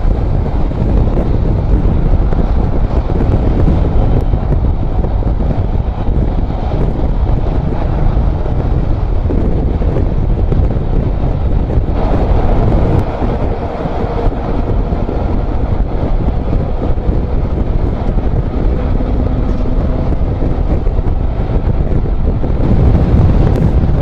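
Steady rush of wind buffeting the microphone of a camera on a motorcycle cruising at highway speed, mixed with the bike's running and road noise.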